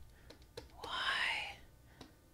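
A woman's whispered vocal sound, rising in pitch, about a second in. It comes after a few soft clicks.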